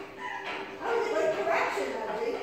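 A dog whining and yipping in two short pitched calls, the second longer and rising.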